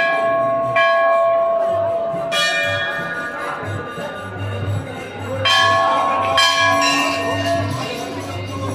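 Temple bells struck by hand about six times at irregular intervals, each strike ringing on with clear, lingering tones.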